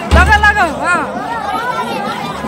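People's voices talking and calling out, with a rise-and-fall shout in the first second and music faint underneath.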